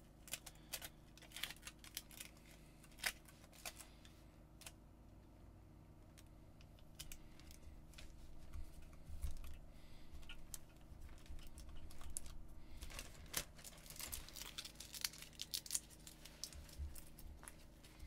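Faint, irregular crinkling and small clicks of aluminium foil tape being torn, wrapped and pressed down by gloved hands, with a plastic zip bag rustling against it. It eases off for a few seconds near the middle, then grows denser toward the end.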